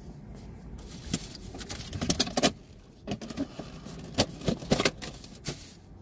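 Handling noise from a GoPro mounted on a cap being adjusted by hand: a run of small plastic clicks and rustling, loudest about two seconds in.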